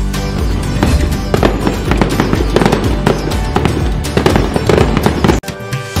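Firework bangs and crackles laid over festive background music, with many sharp cracks throughout. The sound cuts out suddenly for a moment near the end.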